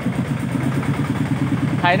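Chang Fa 40 hp diesel engine of a công nông farm truck running with an even chugging rhythm as the truck pulls slowly away.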